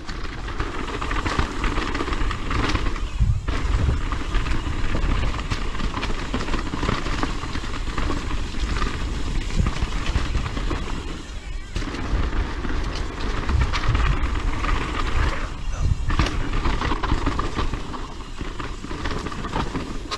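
Propain Tyee mountain bike riding fast down a dirt trail: tyres rolling over dirt and dry leaves and the bike rattling over bumps, in a continuous rushing noise that swells and dips, with wind buffeting the camera microphone.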